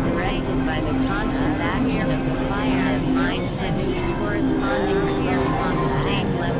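Experimental electronic synthesizer noise: a dense, steady texture with held low drone tones and many short, fast chirping pitch sweeps above them.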